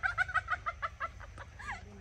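A chicken clucking in a quick run of short calls that stops after about a second, then one longer call near the end.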